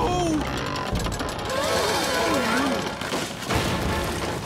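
Cartoon sound effect of a water tower collapsing: a long stretch of cracking and crashing with a heavy impact near the end, under dramatic music and shouts.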